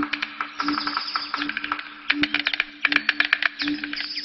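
Birds calling: a quick run of sharp chirps and a high trill, over a low note that pulses about three times a second.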